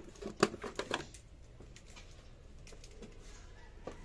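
A few sharp clicks and taps in the first second from hands working plastic parts in a car's engine bay, then only a faint steady background.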